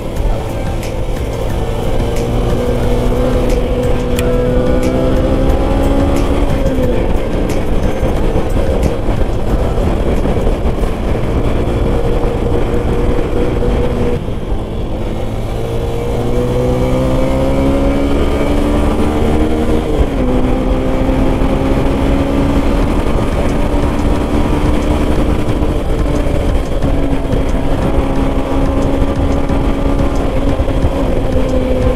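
Motorcycle engine under way, its pitch climbing as it pulls and dropping sharply at upshifts about seven and twenty seconds in. It eases off briefly near the middle, over a steady rush of wind and road noise.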